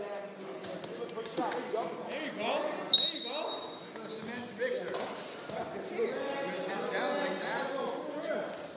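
One referee's whistle blast about three seconds in, high and steady, lasting about a second, over shouting voices in a gym.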